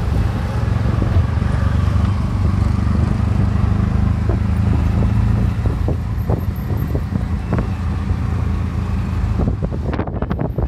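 Auto rickshaw (tuk tuk) engine running steadily while under way, heard from inside its open cabin with road and wind noise and a few short rattles. The sound changes abruptly just before the end.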